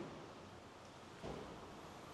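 Faint steady background noise with no clear source, with one brief soft sound about a second and a half in.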